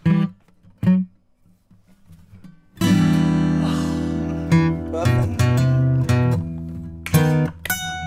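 Alvarez Masterworks Elite all-solid-wood acoustic guitars played together, ending a jam. Two short chord stabs come first, then a gap of about two seconds. A loud strummed chord follows and is left ringing, with more chords over it, and a final pair of stabs comes near the end.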